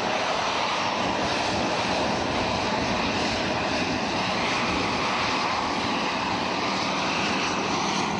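Steady engine noise holding an even level throughout, with no rhythm or breaks.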